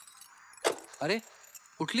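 Car keys jingling in short bursts as the driver takes his seat, with a woman murmuring sleepily, ending in a drowsy "please".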